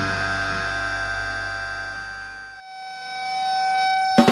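A distorted electric guitar and bass ring out and fade at the end of a powerviolence track. The low end drops away about two and a half seconds in, leaving a steady guitar feedback whine that swells toward the end.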